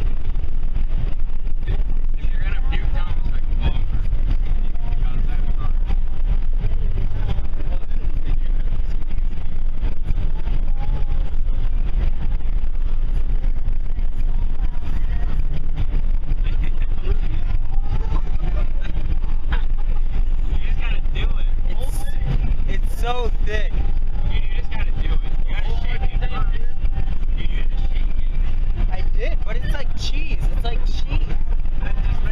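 Steady low rumble of a car driving, heard from inside the cabin, with indistinct voices over it.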